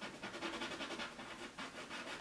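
A hand rubbing on a painted oil canvas in quick, repeated scratchy strokes, wiping wet paint back to lift out a light area.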